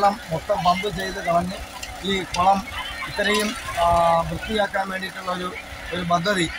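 Small portable petrol-engine water pumps running steadily, pumping water out of a pond through hoses, heard under speech.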